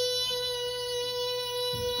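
A B note played on a digital piano, struck once and held as one steady tone that fades slowly near the end. It is the piano check of the B the child just sang, and it matches her note: she sang it on pitch.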